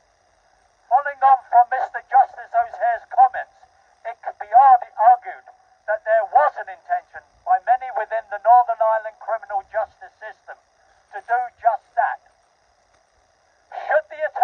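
A man's voice speaking through a handheld megaphone, phrase after phrase with short pauses, sounding thin and boxy, with a faint steady hum from the megaphone in the gaps.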